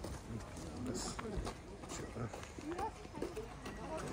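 Faint, indistinct voices of several people chatting as they walk.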